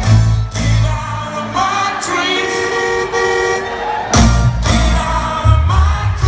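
Live soul band with singers playing in an arena. Early on the bass and drums drop out, leaving a few seconds of held notes and voices, and the full band comes back in about four seconds in.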